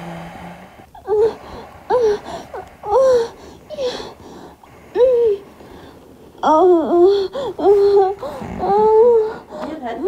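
A recording of a high voice moaning, played loudly through a small speaker: short cries that rise and fall in pitch, about one a second at first, then coming close together in the second half.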